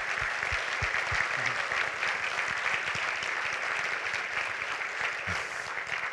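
An audience applauding, a dense, steady clapping that eases off slightly near the end.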